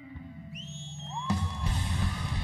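Live rock band dropping to a brief lull filled by rising, then held, high whining tones, before the drums and distorted electric guitars crash back in loudly about a second and a half in.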